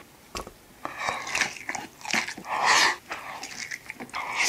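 Close-miked biting and chewing of sticky sauce-glazed fried food eaten with rice, in several separate bursts of wet mouth sounds, the loudest near three seconds in.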